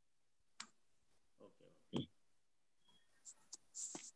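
Near silence on a video call, broken by a few faint, short clicks, one about half a second in and two near the end.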